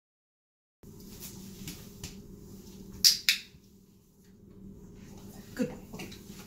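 Two loud, sharp clicks about a quarter second apart, over faint room noise that starts about a second in, with a few fainter clicks before them and a brief low falling sound near the end.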